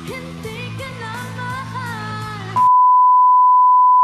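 Pop song with a woman singing over a band, cut off suddenly about two and a half seconds in by a single loud, steady, high beep tone that lasts about a second and a half.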